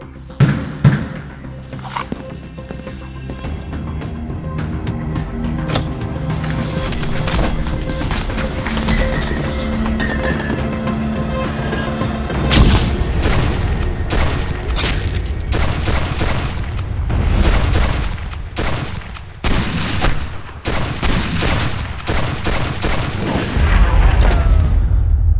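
Action-film soundtrack: tense music builds, then a loud bang about halfway through is followed by a high ringing tone, as from a stun grenade going off. Rapid gunshots and booms fill the rest.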